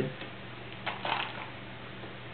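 A short click and a brief rustle about a second in, over a steady low hum.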